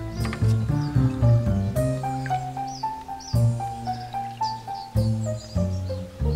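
Instrumental background music made of held notes, with birds chirping over it.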